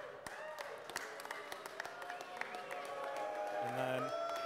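Audience laughing with scattered clapping, the laughter swelling toward the end, where a man's laugh close to the microphone joins in.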